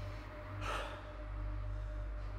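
A man's sharp gasp of shock, one short breathy intake of breath about two thirds of a second in, over a steady low hum and a held tone.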